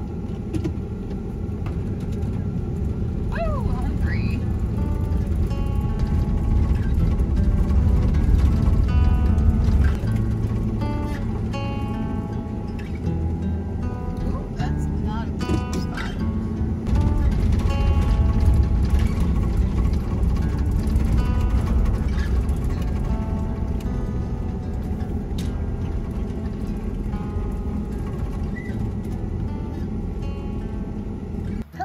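Ford Econoline van's engine and road noise rumbling from inside the cab as it moves slowly along a rough forest track. The rumble swells twice, around a quarter of the way in and again a little past halfway. Background music plays over it.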